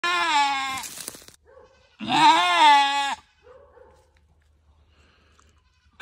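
A doe goat in labour, straining to deliver her kid, gives two long, loud bleats: one at the start and one about two seconds in, each lasting about a second. A short, faint bleat follows.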